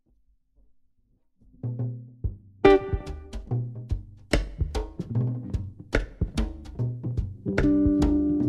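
A live band of electric guitar, electric bass and drum kit plays an instrumental intro, coming in about a second and a half in after near silence. Drum hits punctuate repeating bass notes, and the band grows fuller near the end.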